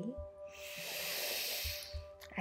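A woman's deep breath in, drawn audibly for about a second and a half, beginning about half a second in. Soft, steady background music plays beneath it.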